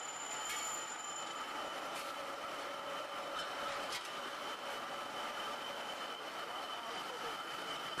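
Steel-rod rolling mill machinery running: a steady mechanical whir with several high steady tones over it and a few faint knocks.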